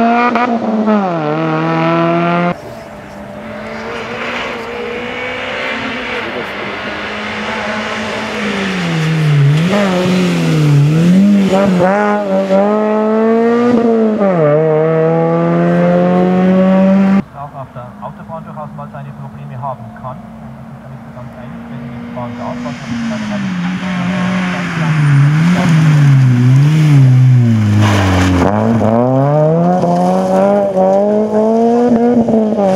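Small hatchback rally car's engine revving hard, its pitch climbing steeply and dropping again and again as it changes gear and brakes for corners. The sound jumps abruptly twice; after the second jump the engine is quieter and more distant for several seconds, then grows loud again as the car comes close near the end.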